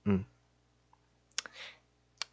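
A single sharp click at the computer about a second and a half in, followed by a brief soft hiss.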